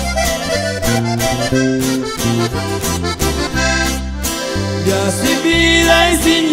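Live norteño band instrumental passage: accordion playing a running melody over strummed guitar and a bass line.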